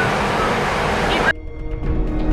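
Loud, steady rushing noise on a ferry's car deck, cut off suddenly a little over a second in by background music with long held tones.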